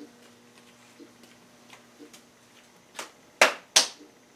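Light ticks about every half second over a faint steady hum, then three sharp knocks close together near the end, the last two loud.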